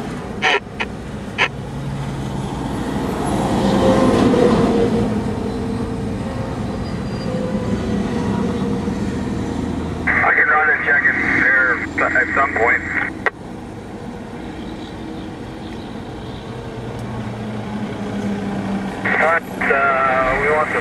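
Highway traffic at night: a vehicle passes close, loudest about four seconds in, over a steady low engine hum. Bursts of tinny two-way radio voice come in around ten seconds and again near the end.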